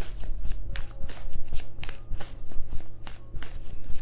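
A deck of tarot cards being shuffled by hand: an irregular run of quick card flicks and taps.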